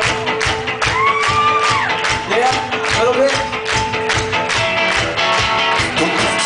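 Live rock band playing loudly: drums keeping a steady beat under guitar, bass and keyboard. A lead melody line slides up and down in pitch about a second in and again a little later.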